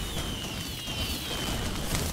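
Intro-animation sound effect of fire and fireworks: a steady fiery hiss with faint crackles, over which a high whistle glides slowly down in pitch.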